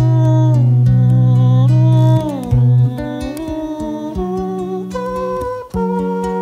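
Live acoustic guitar playing, with a man's wordless vocal melody gliding between notes over it.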